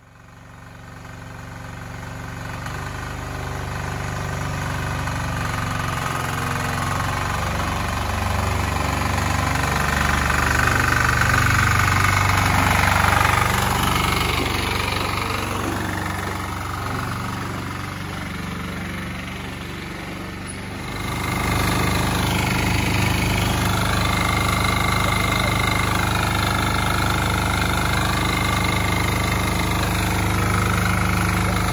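WEIMA walk-behind tractor's single-cylinder diesel engine running as it pulls a trailer. It fades in, grows louder to a peak about halfway through, then dies away a little. About two-thirds of the way in it jumps to a steadier, closer running sound, heard from the driver's seat.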